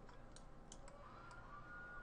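Near silence: room tone with a few faint computer-mouse clicks in the first second, and a faint steady tone coming in about a second in.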